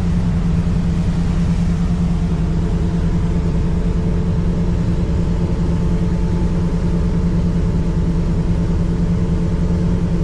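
Twin Volvo Penta D4 diesel engines with IPS drives running steadily at about 2000 rpm under way, a constant low drone with no change in pitch.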